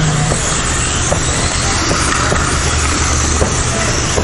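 Kyosho Mini-Z radio-controlled cars with 2500Kv electric motors running laps on an indoor track: a steady mix of small motor whine and tyre noise.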